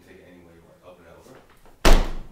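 A single loud, sharp thud near the end as a person is knocked back by a push and his body hits the wooden floor or wall.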